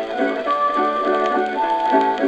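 Harmonica, fiddle and guitar playing an instrumental break of an old country song, played back from an Edison Diamond Disc on an Edison A250 phonograph. Held melody notes run over a steady, evenly repeating strummed rhythm, with no deep bass.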